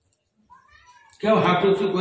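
A man's voice through a microphone. After a brief silent pause and a faint sound, it comes in loud a little past the middle, in a drawn-out tone that bends up and down.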